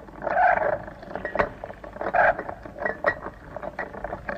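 Film soundtrack of a medieval battle scene: a rapid, irregular series of knocks and clanks, with two loud roaring bursts about half a second in and just after two seconds.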